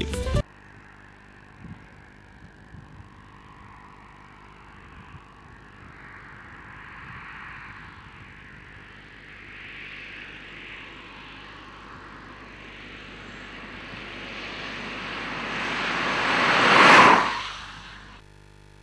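Ford EcoSport SE TDCi diesel SUV passing at high speed: its rushing noise builds slowly for several seconds, is loudest about a second before the end, then falls away quickly as it goes by.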